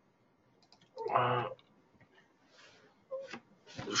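A man's brief voiced hesitation sound, a short held 'eh', about a second in, with a few faint clicks around it; he starts speaking again just at the end.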